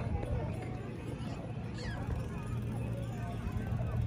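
Ambient chatter of people in an open public square: scattered voices talking and calling out, too distant for words to be made out, over a steady low rumble.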